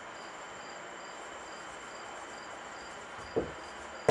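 Quiet room hiss with a faint high-pitched chirp repeating about three times a second, and a short low sound near the end.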